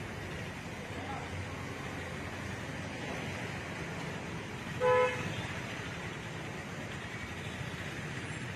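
Steady street traffic noise, with one short, loud vehicle horn toot about five seconds in.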